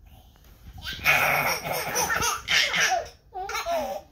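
A baby laughing: a long laugh starting about a second in, then a second, shorter laugh near the end.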